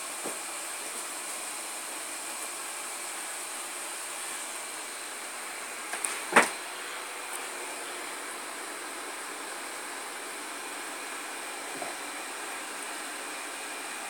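A steady hiss, with one sharp knock a little after the middle and a few faint clicks.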